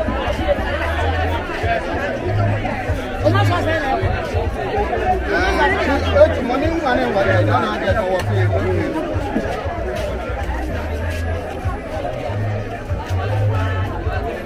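Busy market crowd: many voices talking and calling over each other without a break, with music playing underneath.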